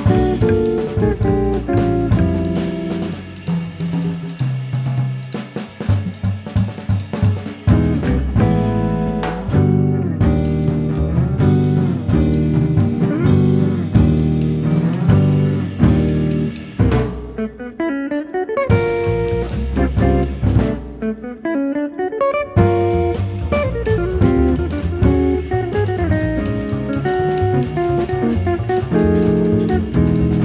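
Jazz guitar trio music: guitar playing melodic lines over bass and drum kit. The cymbals drop out twice briefly around the middle.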